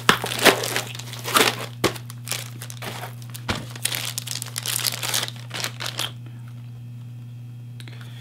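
Plastic wrapping crinkling and rustling as a hard drive is lifted out of foam packing and unwrapped by hand, in irregular bursts that stop about six seconds in.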